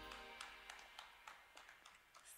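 The band's last note rings out and fades within the first second, then near silence with a few faint clicks.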